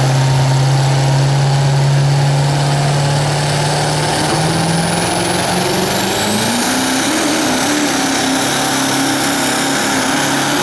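Chevrolet Duramax diesel engine of a pulling pickup dragging a weight-transfer sled: it holds a steady note for a few seconds, then revs up, climbing to a much higher pitch about five to seven seconds in and staying there under load. A faint high whistle rises along with it.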